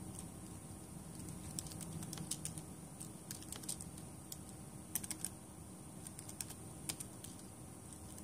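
Typing on a computer keyboard: irregular clusters of faint key clicks as shell commands are entered, over a low steady room hum.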